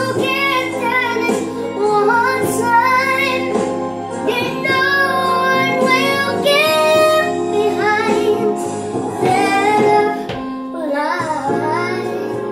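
A song: a high voice sings a melody over steady instrumental accompaniment.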